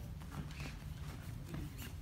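Soft scuffling and rustling as two grapplers in cotton gis shift and crawl on a foam jiu-jitsu mat: light taps of hands, knees and bare feet on the mat and gi fabric brushing.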